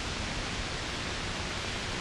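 Steady hiss of an old 1940s film soundtrack, an even noise with nothing else in it.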